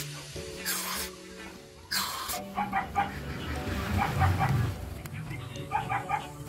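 Aerosol carb cleaner sprayed in two short hissing bursts into a motorcycle brake caliper's passages, flushing out dirt, with background music.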